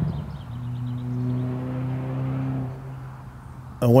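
A motor vehicle's engine humming steadily, dropping slightly in pitch at the start, then fading away about three seconds in.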